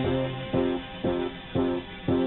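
Guitar playing chords in a steady rhythm, about two strokes a second, with no singing.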